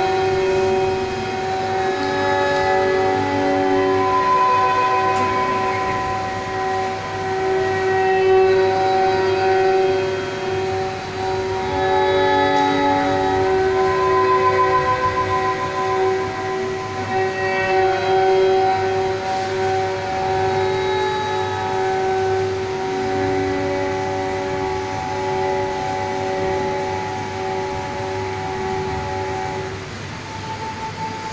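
Recorded backing track for a mime act, played over loudspeakers: a steady drone of held tones with higher notes changing slowly above it every few seconds.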